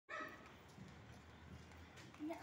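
Near silence: a faint, steady low background hum, opened by a brief high-pitched sound in the first moment.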